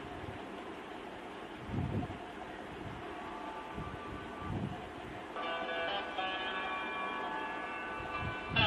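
Gas stove burner flame hissing steadily, with a few low thumps, while a phulka is puffed over the open flame. Background music comes in about five seconds in.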